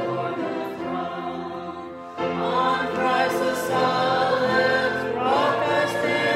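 A church congregation singing a hymn together in long held notes. A new, louder phrase begins about two seconds in.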